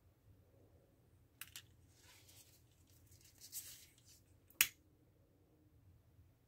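Faint handling sounds of a lighter and ribbon as the ribbon's cut ends are heat-sealed: a couple of small clicks, a soft rustle of the ribbon, then one sharp click of the lighter near the end.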